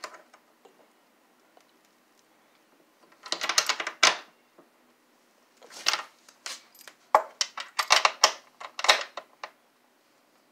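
Hex key turning a bolt in a wooden couch frame, a rapid metal clicking and rattling. It comes in bursts: one about a second long starting about three seconds in, a short one near six seconds, and several more close together between seven and nine seconds.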